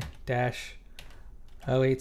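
Computer keyboard keystrokes: a few separate clicks as characters are typed, between short bits of a man's speech.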